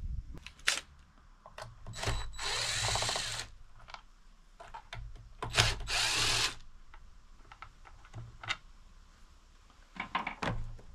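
DeWalt cordless impact driver backing out screws on an outboard motor, in two short runs of about a second each, one around two and a half seconds in and one around six seconds in. Light clicks and knocks come between the runs.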